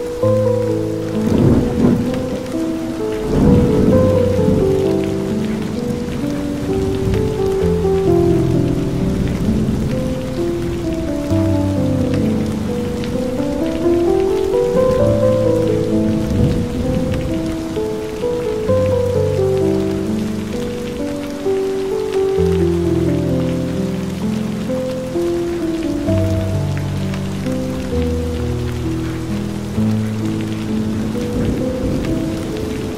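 Steady rain with slow, calm music of held notes rising and falling in gentle runs over deep bass notes. Rumbles of thunder come a couple of times in the first few seconds and again around the middle.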